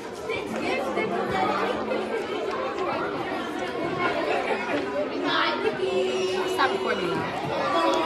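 Crowd chatter: many voices talking at once in a large gym.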